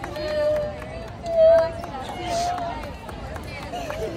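A person crying aloud in long, wavering wails, loudest about one and a half seconds in.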